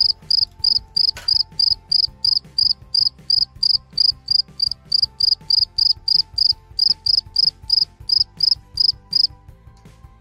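Crickets-chirping sound effect: a loud, steady run of short, high chirps, about three a second, that stops about a second before the end.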